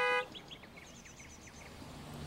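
A car horn held down, cutting off suddenly about a quarter second in. After it come faint bird chirps, a quick run of short calls.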